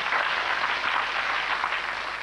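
Studio audience applauding a correct answer with steady clapping.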